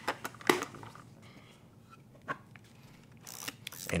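Sharp mechanical clicks as the Pentax 6x7's hinged film back is closed and latched: three quick clicks in the first half second, the last the loudest, then one more click a little past two seconds.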